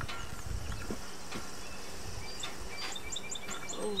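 Outdoor songbirds chirping, with a quick run of about six short high chirps in the second half, over a low background rumble.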